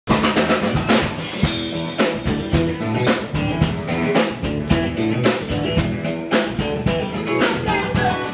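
Rock band playing: busy drum-kit beats, with snare and bass-drum hits several times a second, over sustained electric guitar chords.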